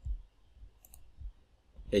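A few light clicks of a computer mouse, spread across the two seconds.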